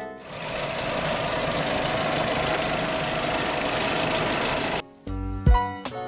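2018 Chevrolet Aveo's four-cylinder engine running, a steady dense mechanical noise that starts just after the beginning and cuts off sharply about five seconds in.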